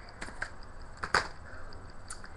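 Handling noise: a few quiet clicks and a short swish, the loudest about a second in.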